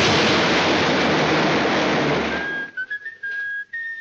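Cartoon crash effect of a falling body and anvil slamming into the ground: a loud, noisy rumble lasting about two and a half seconds. It gives way to a lone whistled tune, a thin high melody that steps between a few notes.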